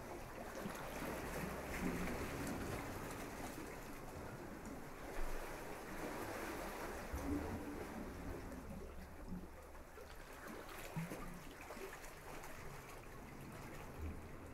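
Surf washing onto a sandy beach: a steady rush of water that swells and eases gently, with a low rumble underneath.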